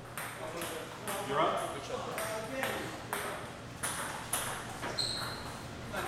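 Table tennis balls clicking off tables and paddles, several irregular clicks a second.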